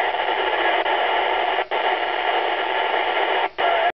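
Steady hiss from a Yaesu FT-212RH FM radio receiver with no voice on the channel, the noise of an open squelch with no signal coming through. The hiss drops out briefly about a second and a half in and again near the end.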